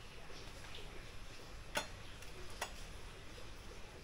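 Two sharp clicks just under a second apart over faint room noise.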